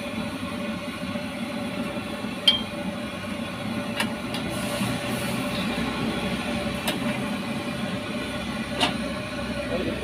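Noodle broth boiling hard in a steel wok, a steady bubbling rumble, with four sharp clinks of a metal ladle against the wok.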